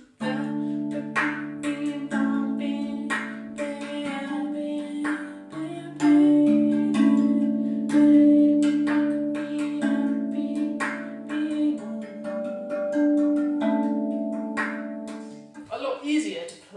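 RAV steel tongue drum played with bare hands: struck notes ring on with a long sustain over held low notes, with quick light ghost-note taps filling in between them.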